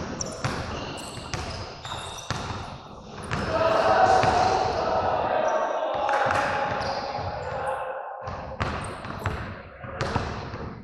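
Repeated knocks or thuds, with voices rising into a loud, held call or shout from about three seconds in, lasting several seconds.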